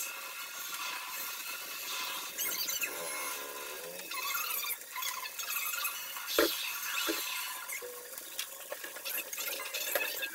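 Okra frying in oil in a lidded nonstick pan over a gas burner: a steady sizzle with small crackles. A brief wavering tone comes about three seconds in, and a single knock just past the middle.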